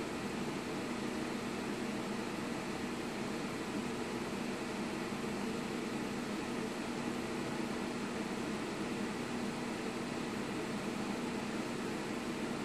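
Steady fan whir with an even low hum from the two Chauvet Scorpion 3D RGB laser fixtures running their effects.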